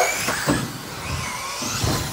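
Modified-class 4WD electric RC buggies racing past, their motors giving high whines that rise and fall in pitch as they accelerate and brake.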